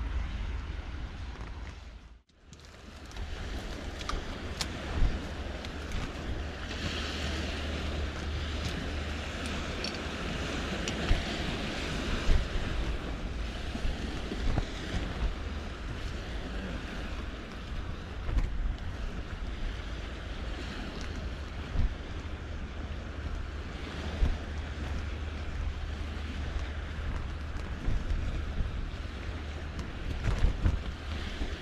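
Gusty wind buffeting the microphone, a steady low rumble with occasional sharp thumps from stronger gusts, over the wash of estuary water on the shore. The sound drops out briefly about two seconds in, then resumes.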